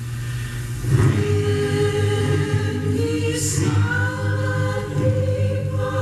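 A choir singing sustained chords, broadcast music playing from a portable radio's speakers.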